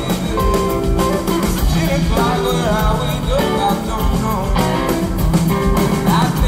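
Live rock band playing: a male lead voice singing over electric guitars, bass and a drum kit keeping a steady beat.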